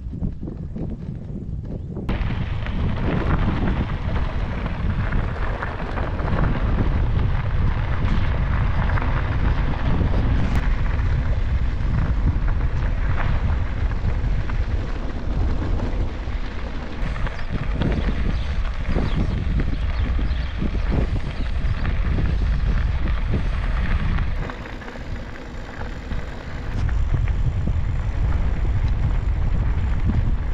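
Bicycle tyres rolling over a gravel road, heard as a steady crunching rumble with scattered knocks, under heavy wind buffeting on the microphone. The noise drops for a couple of seconds a few seconds before the end.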